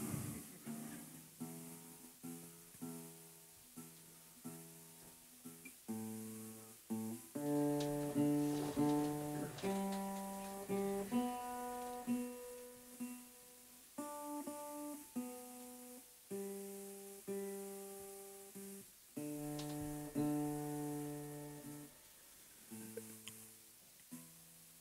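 Acoustic guitar being tuned: single strings and pairs of notes plucked again and again and left to ring, with short pauses in between.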